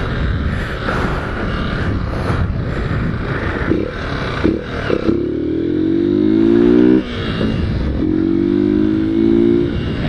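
Motorcycle engine accelerating hard twice, its pitch rising each time. The first run cuts off abruptly about seven seconds in and the second climbs again soon after. Heavy wind rush on the microphone fills the first half.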